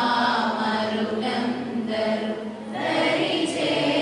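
Group of women singing a devotional chant together, over a steady low held note.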